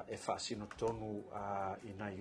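Speech: a man talking in Samoan, with a few short clicks about half a second in.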